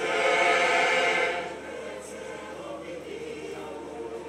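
Mixed choir of men's and women's voices singing a motet in Ebira, loud for about the first second and a half, then carrying on more softly.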